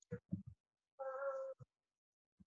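A cat meowing once, a short steady-pitched call about a second in, after a few brief low sounds.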